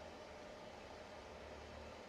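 Near silence: the room tone of a hall full of people keeping a minute's silence, with a faint steady low hum and no voices.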